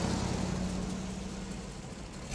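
Car engine running with a steady low hum, fading slightly.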